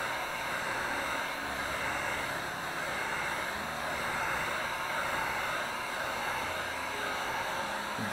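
Steady rushing noise of a handheld heat tool run over wet acrylic paint to pop surface bubbles.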